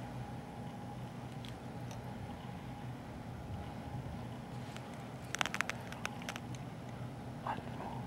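A steady low hum, with a quick run of about half a dozen sharp clicks a little past halfway.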